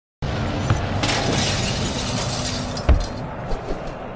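Intro sting sound effects: a noisy whooshing wash that swells about a second in, a sharp hit just before three seconds in and a few smaller ones, then fading out.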